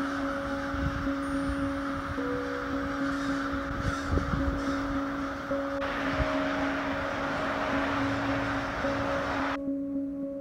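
Loud birds calling, mixed with wind rumbling on the microphone, over soft background music with steady held tones. The bird calls and wind stop suddenly near the end, leaving only the music.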